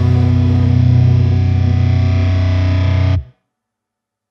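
Final held chord of a melodic metal song: a low, distorted electric guitar chord ringing out steadily, then cutting off suddenly about three seconds in.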